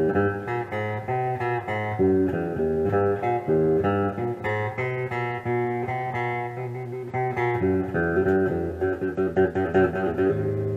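Telecaster-style solid-body electric guitar being played: a continuous run of quickly picked single notes, with a few fuller chords near the end.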